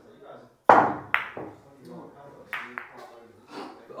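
A pool shot: a sharp crack of the cue tip striking the cue ball, then the clack of balls colliding, followed by two lighter clacks a little later as the balls strike again.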